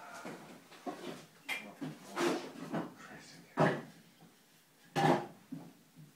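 Irregular knocks and scrapes, about six of them, as a person works over a plastic bucket handling renovation debris. The loudest two come about three and a half and five seconds in.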